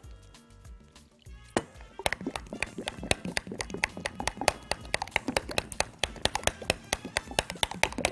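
Metal fork beating a thin yeasted batter in a glass bowl, clinking rapidly against the glass many times a second, starting about a second and a half in, with background music underneath.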